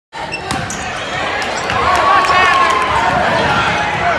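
Basketball being dribbled on a hardwood gym floor amid the chatter of a crowd of spectators, with short high squeaks of sneakers on the court.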